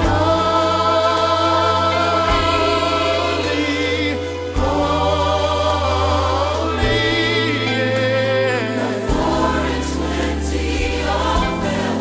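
Gospel choir singing sustained chords with vibrato over a low bass line that moves to a new note about every two seconds.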